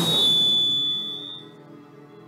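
A sudden loud rushing blast fades away over about a second and a half, with a thin high ring in it, over soft sustained music.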